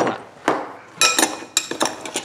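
Frozen strawberries knocking against a dish, several sharp clacks with a short ringing tail. They clack because they are frozen hard.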